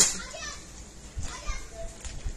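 Soft low bumps and rustling as folded sarees are picked up and handled, with a faint voice in the background.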